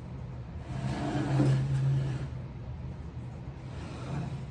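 A motor vehicle passing by outside: its engine sound swells to a peak about a second and a half in and fades away about a second later, over a low steady background hum.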